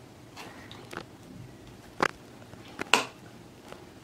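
Metal spoon spreading mayonnaise on burger buns, knocking lightly against the plate: a handful of short clicks, the loudest about three seconds in.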